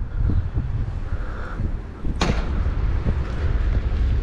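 Wind buffeting the microphone, a steady low rumble, with one sharp knock about two seconds in.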